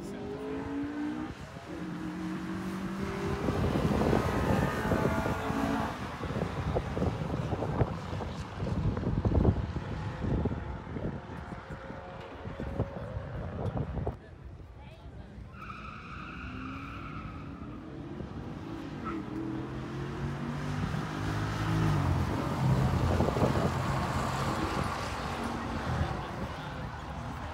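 Street-legal drag cars accelerating down the drag strip, their engines revving up in steps through the gear changes. The sound drops off suddenly about halfway through. A steady tone sounds briefly, then another car revs up through its gears near the end.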